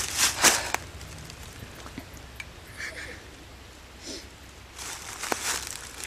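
Crunching and rustling of footsteps in dry fallen leaves, in the first second and again near the end, with a quieter stretch between.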